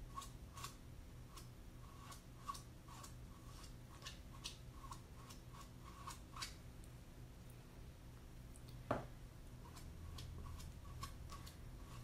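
Faint, irregular scraping clicks of chalk paste being worked across a silkscreen transfer on a chalkboard, about two strokes a second, then a single louder click about nine seconds in.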